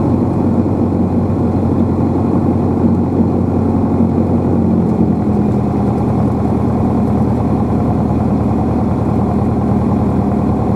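Light aircraft's piston engine and propeller running at low taxi power, heard inside the cockpit as a loud, steady drone, with a slight shift in pitch about halfway through.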